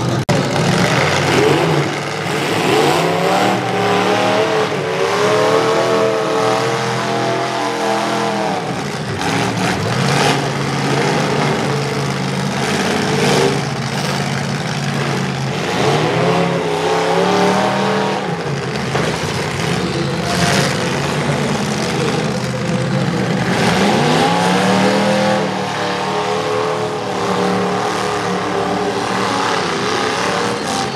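Demolition derby trucks' engines running hard and revving in repeated surges, the pitch climbing near the start, again about halfway through and once more in the last third, with a few sharp bangs among them.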